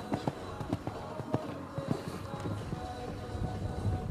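Hooves of a Holsteiner stallion cantering on the sand footing of a show-jumping arena: an uneven run of dull thuds, with faint background music.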